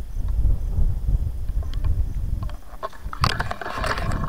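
Wind buffeting the phone's microphone, a gusty low rumble ahead of an approaching rainstorm. Near the end, crackly rustling as the phone brushes through tall grass stalks.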